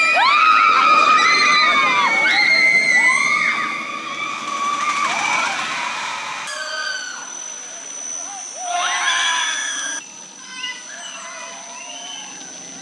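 Riders on a launched straddle roller coaster screaming and shouting as the train runs past. After a cut about six and a half seconds in it is quieter, with another short burst of screams about nine seconds in.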